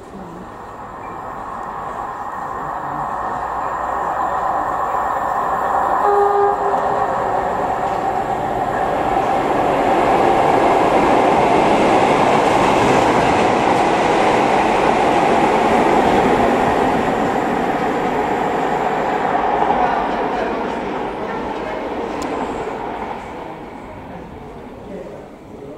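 Class 47 diesel locomotive passing close by, its Sulzer V12 engine running; the sound grows steadily louder as it approaches, stays loud for several seconds as it goes by, then fades away. A short horn note sounds about six seconds in.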